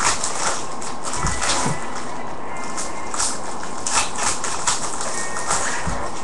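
Plastic trading-card pack wrapper crinkling in short irregular bursts as it is handled and torn open by hand, over a steady hiss.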